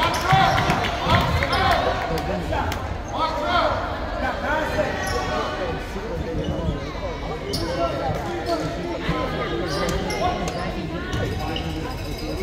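Basketball bouncing now and then on a hardwood gym floor, with sharp bounces in the second half, over the chatter of many voices echoing in the gymnasium.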